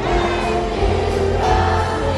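Amplified pop song with a strong steady bass line and a large children's choir singing along.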